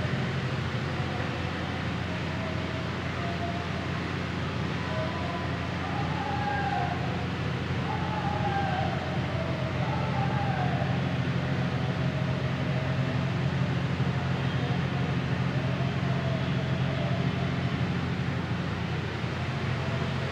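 A steady low hum under background noise, with faint wavering tones that rise and fall now and then, mostly in the middle.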